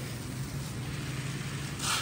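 Garden hose spray nozzle hissing as water falls on soil and plants, with a steady low hum underneath and a brief louder hiss near the end.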